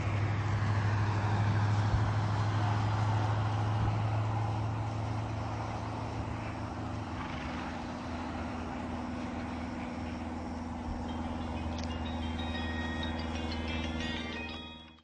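A steady low hum like a running motor, with a noisy wash over it. Its lowest tone weakens about halfway through, and faint high tones come in near the end.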